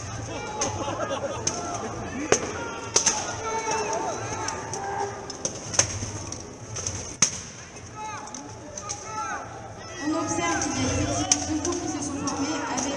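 Scattered sharp blows of medieval weapons striking armour and shields in a full-contact béhourd fight, a handful of separate hits several seconds apart, over crowd voices.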